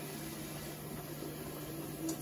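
Stovetop pressure canner hissing steadily as it comes up to pressure.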